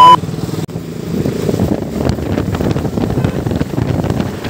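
A high, loud censor-style bleep cuts off right at the start. After a brief break, a KTM RC motorcycle's single-cylinder engine runs steadily while riding.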